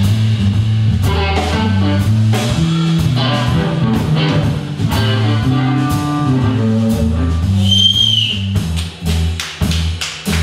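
Live blues band playing: an electric guitar lead over an electric bass line and a drum kit. A high bent guitar note comes a little before 8 seconds in, and the band drops out briefly a couple of times near the end.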